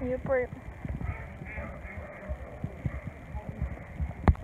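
Horse's hooves knocking irregularly on hard ground as it is led on a lead rope, with handling knocks close to the microphone. A short wordless voice sound is heard at the very start.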